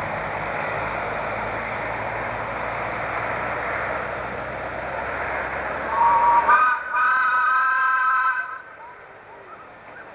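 Steam locomotive whistle blowing: it sounds about six seconds in, steps up in pitch as it opens, holds for about two and a half seconds and stops. Before it, a steady rushing noise with a low hum, which cuts off just as the whistle opens.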